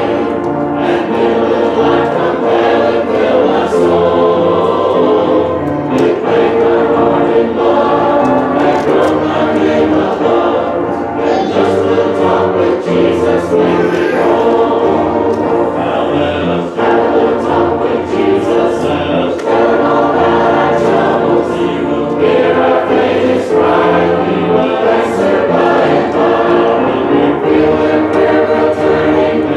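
A congregation singing a hymn together in steady, sustained phrases.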